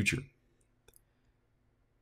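A narrator's last word trails off, then near silence with two faint, short clicks just under a second in.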